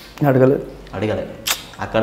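A man speaking in short bursts, with a single sharp click about a second and a half in.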